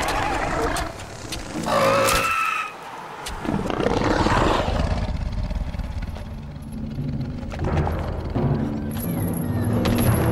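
Film soundtrack mix: orchestral score under the roars and screeches of large monsters, with effect hits.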